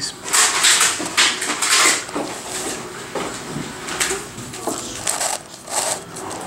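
Plastic pieces of a Crazy Radiolarian twisty puzzle clicking and scraping as its faces are turned, a string of short turns that is busiest in the first couple of seconds.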